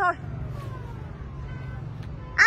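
Steady low hum of a running motor vehicle, with a faint whine falling slowly in pitch.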